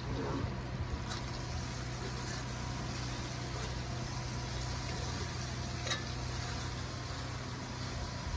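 Food sizzling in a cast iron skillet on a camp stove, over a steady low hum, while a fork turns it; a light click about six seconds in.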